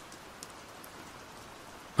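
Steady rain, an even hiss with a few faint ticks of drops.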